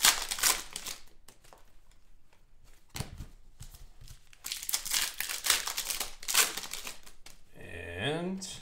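Foil trading-card pack wrapper crinkling and tearing as it is opened, in two bouts: a short one at the start and a longer, denser one from about halfway to near the end. There is a quieter gap with a single click between them.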